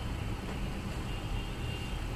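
A steady low rumble with an even hiss, with a faint thin high tone near the end.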